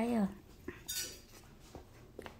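A short vocal sound right at the start, then a few light clinks and a brief high rattle about a second in.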